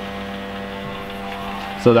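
Steady electrical hum with several fixed tones from a CNC hot-wire foam cutter running as its heated wire melts a cut through a foam block.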